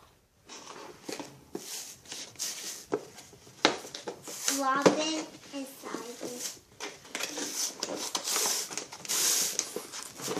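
Cardboard and clear plastic toy packaging being opened and handled by hand: irregular rustling, crinkling and scraping with a few sharp clicks. A brief child's vocal sound comes about five seconds in.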